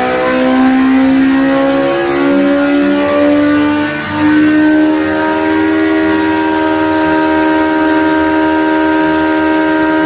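Honda CB1100F's inline-four engine running hard on a chassis dynamometer: the pitch climbs in steps over the first few seconds of the pull, then holds steady at high revs.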